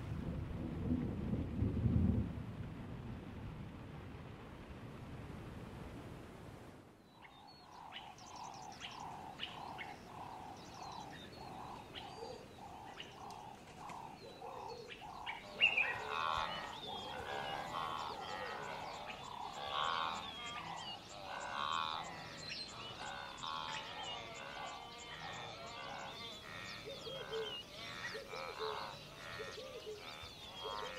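Music fades out over the first few seconds. Then a natural chorus of calling animals begins: at first a single call repeated about one and a half times a second, and from about halfway on a dense mix of varied chirps and calls.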